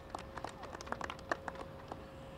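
A few people clapping by hand: sparse, irregular claps of brief applause.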